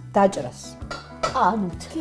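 A knife clinking a few times against the side of a stainless-steel pot as curd is cut, over steady background music with a short burst of speech.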